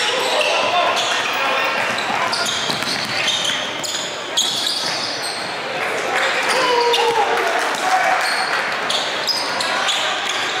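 Live basketball game sound in a gymnasium: a ball bouncing on the hardwood court, short high squeaks from sneakers, and voices of players and spectators ringing in the big hall.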